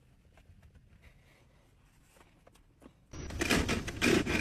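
A few faint taps on Tesla Model 3 dashboard trim, then, about three seconds in, a sudden loud run of creaks and rattles from a Tesla's centre-console plastic trim as a hand presses and works it. The loose trim is rattling: the 'Reality' side of a joke about Tesla build quality.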